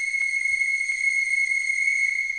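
A whistle blown in one long, clear, high note, held at a single steady pitch with a brief slide up to it at the start.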